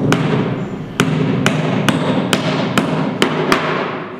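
A hammer driving nails into a timber formwork box: about eight sharp blows, coming steadily at roughly two a second after the first second, over background music.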